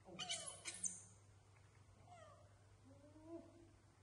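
Baby macaque crying out: a burst of shrill, high-pitched cries in the first second, then a few fainter, gliding whimpers.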